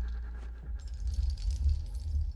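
Small metal pieces on a chain jingling and clinking in a hand, starting about a second in, over a deep low rumble.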